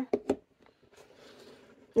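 Two light clicks from a plastic eyeshadow palette case being handled, then faint rustling as it is laid on the table.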